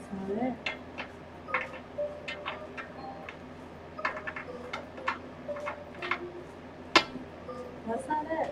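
Tarot cards being shuffled and handled by hand, giving a run of irregular sharp clicks and taps, the loudest about seven seconds in.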